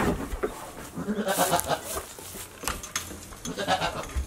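Goats at close range giving a few short bleats, with rustling and knocking as they move about.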